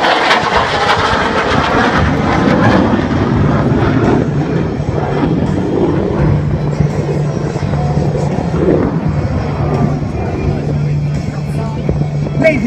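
F-16 Fighting Falcon jet engine noise during a low fly-by, loudest in the first two seconds with a wavering, phasing sweep as the jet passes. It then eases into a steady rumble as the jet draws away, with a steady low hum underneath.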